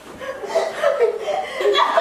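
Young women laughing and chuckling together.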